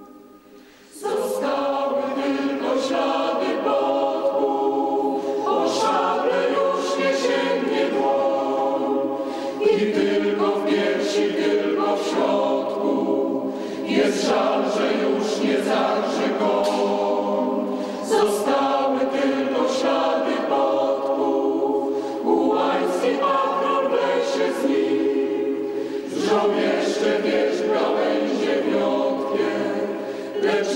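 A choir singing, starting about a second in, in held phrases of a few seconds each.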